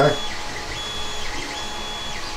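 A 3D printer running in the room: a high-pitched motor whine that starts and stops in notes about half a second long, over a low steady hum.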